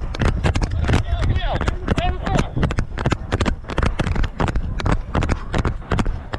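Quick, regular running footfalls on a dirt track with the knock and rattle of gear, picked up close by a body-worn camera on the running officer.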